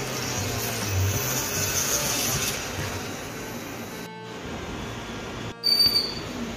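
Background music over the whir of a cordless mini rotary tool drilling a hole in the ear of a Ganpati idol for an earring. The sound drops out twice, and a brief loud high tone comes near the end.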